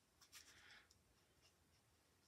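Near silence, with a few faint ticks and a brief soft rub in the first second: a nitrile-gloved finger smearing wet acrylic paint across a canvas.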